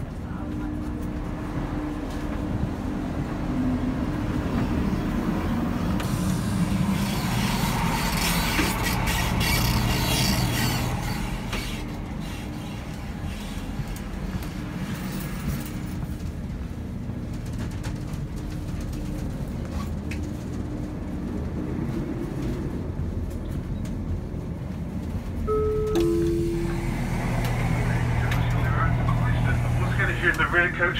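Inside the passenger saloon of a Class 170 Turbostar diesel multiple unit on the move: a steady drone from its underfloor diesel engine and wheels on the rails, growing louder for a few seconds about a third of the way in. Near the end, a two-note descending chime sounds, the start of an on-board passenger announcement.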